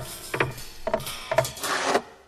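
Pixar-style logo sound effects of the animated desk lamp hopping: three springy thumps with short squeaks, about half a second apart.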